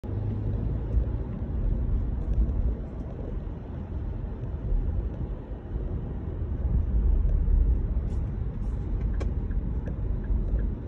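Steady low rumble of a car's engine and tyres heard from inside the cabin while driving, with a few faint clicks near the end.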